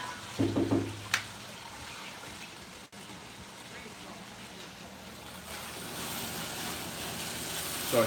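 Kitchen faucet water running into the sink as a silicone spatula is rinsed under it, with a short low hum and a click about a second in. A faint, even hiss follows and grows a little louder near the end.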